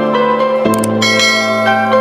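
Soft intro music with sustained chords, overlaid by subscribe-button animation sound effects: a short click about two-thirds of a second in, then a bright bell chime about a second in.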